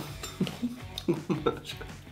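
A table knife scraping and spreading butter inside a soft bread roll, in short irregular strokes.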